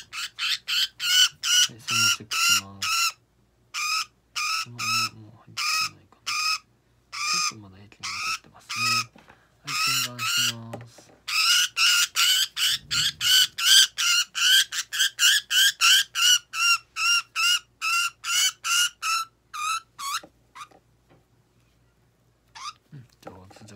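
Budgerigar held restrained in the hand, giving rapid, repeated harsh squawks of distress, about three a second; the calls stop shortly before the end.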